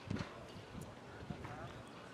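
Faint distant voices around a baseball field, with a few light knocks just after the start.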